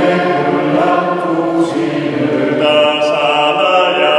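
A group of voices singing a slow hymn together, with long held notes.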